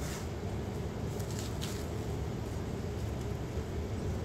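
Steady low background hum, with a few faint, brief crinkles of cling film as hands press it around a block of dough, one at the start and two about a second and a half in.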